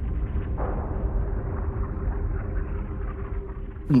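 Low, muffled, continuous rumble of naval shellfire and explosions, with a faint steady hum beneath it and no sharp individual blasts.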